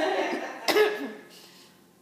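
A woman coughing: voice-like sound at the start, then one sharp cough about two-thirds of a second in that dies away soon after.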